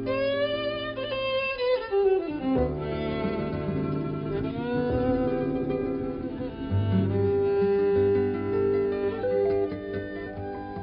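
Jazz violin playing a bowed melody with vibrato, over electric archtop guitar, acoustic guitar and double bass. The violin slides a held note downward about two seconds in and swoops up into a long note about four and a half seconds in.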